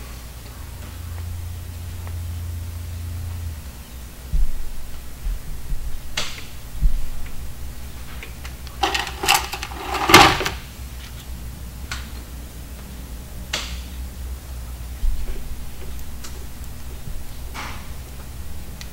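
Scattered metallic clicks and knocks of hand tools and brake-line fittings being handled at a disc-brake caliper, with the loudest clatter about nine to ten seconds in.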